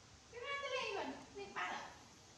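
Baby monkey crying in high-pitched squeals: one long call that falls in pitch at its end, then a shorter, harsher one near the end.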